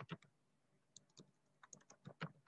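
Faint keystrokes on a computer keyboard: a few taps at the start, two more about a second in, and a quick run of taps near the end.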